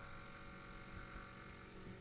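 Faint room tone: a steady low hiss with a light electrical hum, nothing else.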